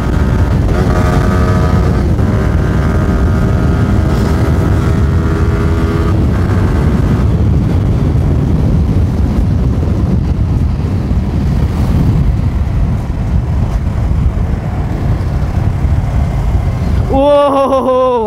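Wind rushing over the microphone on a Yamaha sport bike at about 110 km/h in high gear, with the engine's steady note at constant revs heard over it for the first several seconds. The bike is slowing down near the end.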